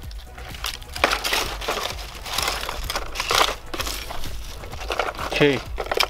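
Hands rummaging through shattered plastic phone cases and their cardboard-and-plastic packaging: irregular crinkling, crunching and clattering of broken plastic fragments and debris.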